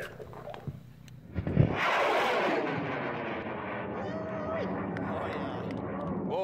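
High-power rocket's solid-fuel motor igniting about a second and a half in with a sudden bang, then a loud rushing roar that slowly fades as the rocket climbs away. Voices call out briefly partway through.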